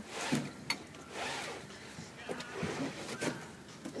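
A western saddle being lifted down off its rack: scraping and rustling of leather, with a few short knocks of its hardware.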